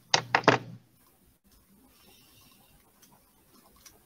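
Three quick sharp clicks in the first second over a low hum, then near silence with faint room tone and one faint tick near the end.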